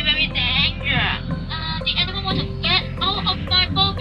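A voice singing or chanting with a wavering vibrato in short phrases, over a low steady hum.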